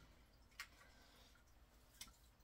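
Near silence: room tone, with one faint short click a little over half a second in.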